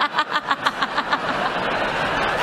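A person's rapid, breathy laughter, about six quick pulses a second, dying away after a little over a second.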